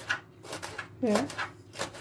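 A kitchen knife slicing fresh green peppers into rings on a plastic cutting board, a string of quick, irregular knife taps on the board.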